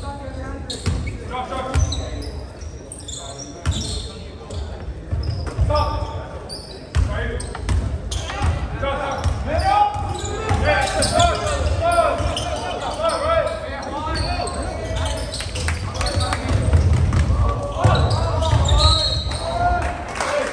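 A basketball being dribbled on a hardwood gym floor, with repeated sharp bounces ringing in the large hall. Voices of players and spectators carry through the gym.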